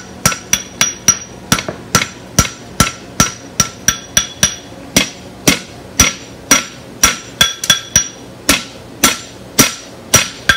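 Hand hammer striking red-hot steel on an anvil in a steady forging rhythm, about two to three blows a second, each blow ringing off the anvil.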